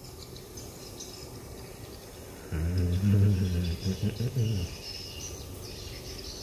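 Faint outdoor background of birds chirping and insects. For about two seconds in the middle comes a louder, low, voice-like hum.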